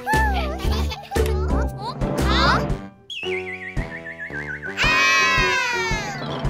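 Bouncy children's cartoon music with children's happy shouts, which breaks off about three seconds in. A long, falling, wavering whistle-like tone follows, and near the end children cry out together in one loud, sliding shout.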